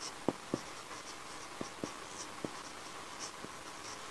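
Marker pen writing on a whiteboard: faint high squeaks of the felt tip on the board, with a few light taps as letters are started.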